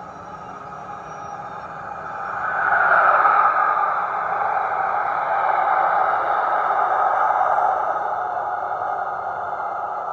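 HO-scale model locomotive's electric motor and gearing running with a steady whine as it approaches on the track. It grows louder from about two seconds in and eases off after about eight seconds as the locomotive comes to a stop.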